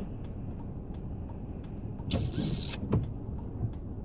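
Low, steady car rumble heard inside the cabin, with a brief hissing swish about two seconds in.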